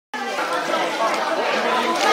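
Several people talking at once: overlapping, indistinct chatter.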